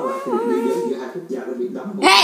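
A child's voice singing a wordless tune in long held notes that slide gently in pitch.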